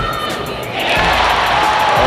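Basketball arena crowd noise swelling into loud cheering and yelling about a second in, with music underneath.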